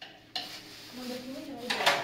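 Plastic sheet rustling and crinkling as it is handled on the floor, with a louder crinkle near the end.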